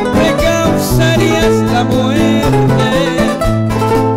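Two acoustic guitars playing live together, notes picked over sustained bass notes, in an instrumental passage with no singing.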